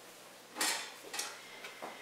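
A cloth wiping the top of a glass bottle, heard faintly: one short rub about half a second in, then a few fainter rubs and light knocks.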